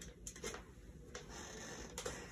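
Quiet room tone with a few faint taps and a soft rustle of a person shifting about.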